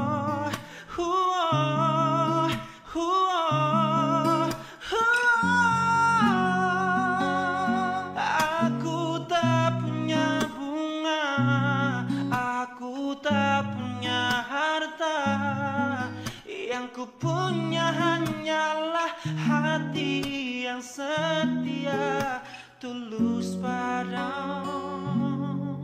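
Instrumental break in an Indonesian pop ballad: acoustic guitar chords under a wordless lead melody with a pronounced vibrato.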